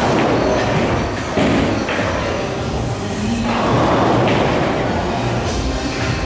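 A pool shot: the cue strikes the cue ball and balls knock together, a few sharp clicks over steady background music.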